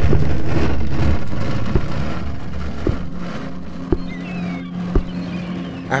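Low rumbling drone from a film soundtrack with a steady low hum underneath. The rumble fades out after about a second, and four soft knocks follow about a second apart.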